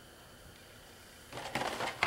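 Quiet room tone, then about a second and a half in, a short burst of clicking and rustling handling noise as metal engine parts and tools are moved and set down on a paper shop towel on a workbench.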